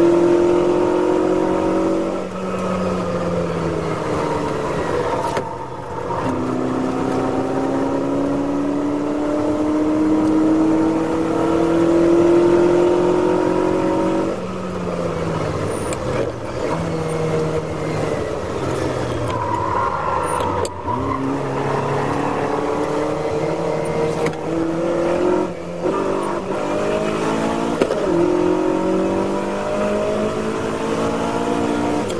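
Ferrari 308 GT4's V8 engine at racing speed, heard from inside the car. Its pitch climbs steadily for several seconds, falls away about halfway through as the car slows and changes down, then climbs again, with brief dips at each gear change.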